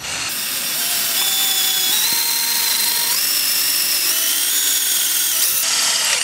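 A cordless drill boring a hole through the metal side wall of a scooter deck. Its motor whine climbs in pitch in a few steps, then stops abruptly near the end once the bit is through.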